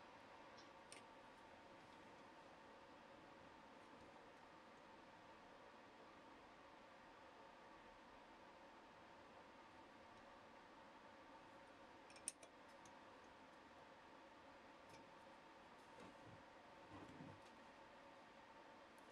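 Near silence: a faint steady hum with a few light clicks of a steel workpiece clamp and spanner being handled on an angle plate, the sharpest click about twelve seconds in.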